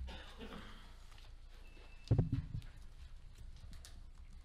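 Quiet room tone with a short cluster of dull, low thumps about two seconds in.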